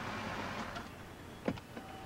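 A car running with a steady noise of engine and road that eases off about a second in, then a single sharp click.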